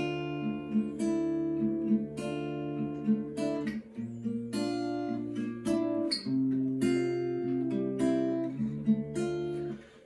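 Acoustic steel-string guitar playing through a chord progression, several strings sounded together in repeated strokes, the chord shape changing every couple of seconds. The playing fades out just before the end.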